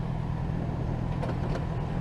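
Steady low engine hum and road noise of a vehicle running at an even speed.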